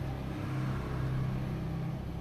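A steady low machine hum.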